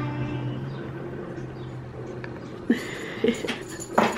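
A baby's brief voiced sound at the start, over a steady low room hum. Near the end come a few short bursts of a woman's laughter.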